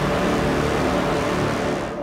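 Dramatic film-score music with a loud, rushing swell of noise and a low rumble, easing off near the end.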